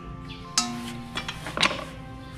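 Two sharp thuds on a thick wooden chopping board, about a second apart, as a small whole chicken is handled on it, over steady background music.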